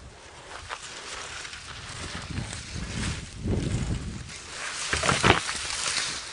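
Dead branches being dragged off a dirt track, scraping and crackling, with footsteps in dry grass; a couple of sharper knocks come midway and near the end.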